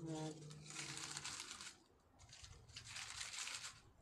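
Clothing fabric rubbing against the microphone in two rustling bursts of about a second each, with a brief voice at the start.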